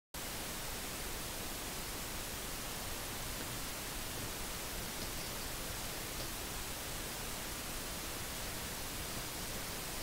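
Steady, even hiss of recording noise from the camera's microphone, with nothing else standing out.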